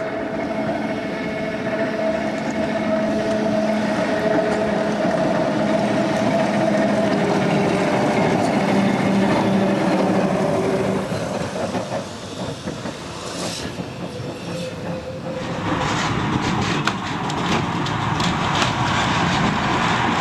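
Electric tram running on street track: a steady drone for the first half, then the wheels clicking and clattering over the rails in the last few seconds.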